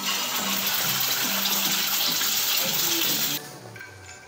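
Egg frying in hot oil in a frying pan: a loud, even sizzle that starts suddenly as the egg goes in and cuts off sharply about three and a half seconds in. Background music plays underneath.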